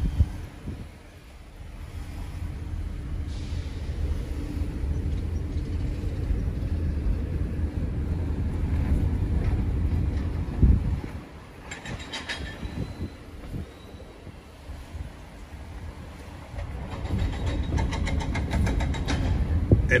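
Steady low rumble of road and engine noise from a car driving slowly, heard from inside the cabin, with a single thump about halfway through and some light clicking later.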